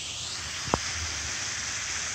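Steady hiss of a waterfall's rushing water in a gorge, with one short click about three quarters of a second in.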